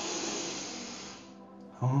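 A long, deep breath, loudest at the start and fading away over about a second and a half, followed by a short sigh and a voice near the end.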